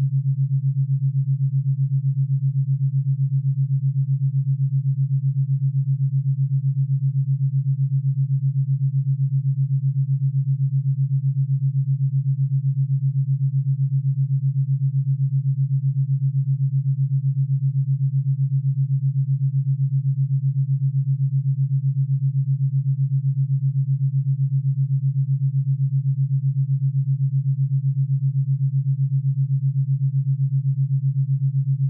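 Theta binaural beat: two steady low sine tones set 7.83 Hz apart, one for each ear. Together they are heard as a low hum that pulses about eight times a second.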